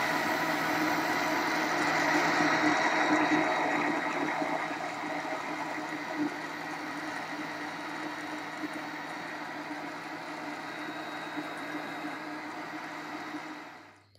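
Electric blender running steadily, puréeing cooked pumpkin with water. The motor sound is loudest for the first few seconds, then settles lower and quieter, and it stops abruptly at the end.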